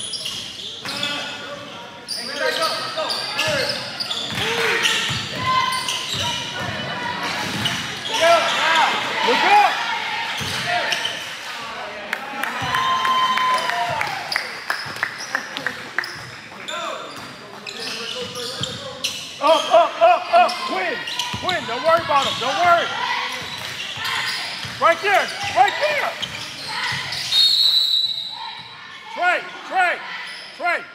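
Indoor basketball game: a basketball bouncing and being dribbled on the court in runs of short knocks, over shouting and chatter from spectators and players echoing in the gym.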